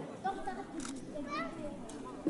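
Background chatter of several people, children's voices among them, talking and calling out.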